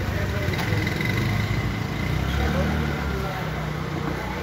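Street background noise: a steady low engine rumble, like traffic or an idling vehicle, with indistinct voices.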